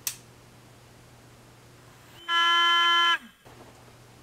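A click, then about two seconds in a small battery-powered helmet defogging fan whines at a steady high pitch for about a second and dips in pitch as it cuts off.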